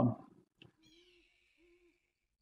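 A man's voice trails off in the first moment. Then come faint low hoots, one about half a second in and a shorter one near the end, under a faint high call that falls slowly in pitch.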